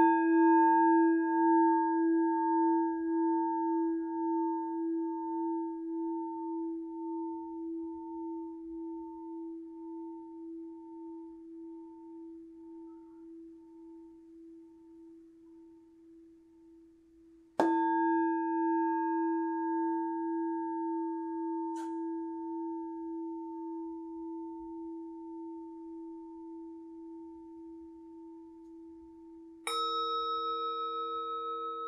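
Tibetan singing bowl struck and left to ring, its tone slowly dying away with a pulsing wobble. It is struck again about two-thirds of the way through. Just before the end a higher-pitched bowl is struck.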